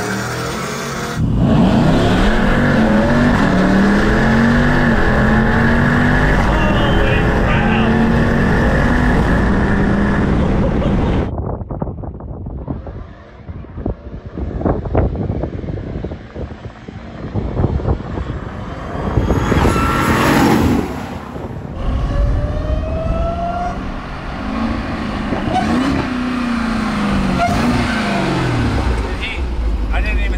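Jeep Grand Cherokee Trackhawk's supercharged V8 at full throttle heard inside the cabin, its note climbing in steps through the upshifts. After that, from beside the drag strip, the engines of the racing vehicles are heard more distantly, then the Trackhawk's engine rising and falling as it drives toward and past.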